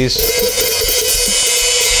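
Hi-hat cymbals on a Tama MXA53 closed hi-hat attachment ringing in a sustained, shimmering wash that sets in at the start and carries on throughout.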